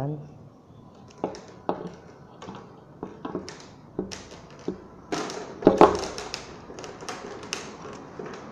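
Plastic clicks and knocks of a clear plastic standing-fan blade being handled and pushed onto the motor shaft, separate taps every half second or so, then a burst of louder rattling knocks about five to six seconds in.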